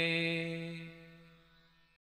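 A man's voice holds the final note of a Malayalam Islamic devotional song, a single steady pitch that fades away over about a second and a half and then cuts to silence just before the end.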